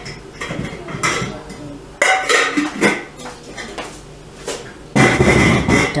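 Dishes and cutlery clattering in irregular knocks and scrapes, loudest about five seconds in.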